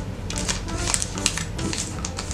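Origami paper being folded and creased by hand on a tabletop: a quick, irregular run of short crisp paper rustles and taps over a steady low hum.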